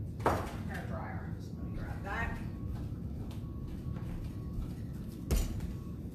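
Two sharp knocks, one just after the start and a louder one a little over five seconds in, over a steady low hum, with faint murmured speech in between.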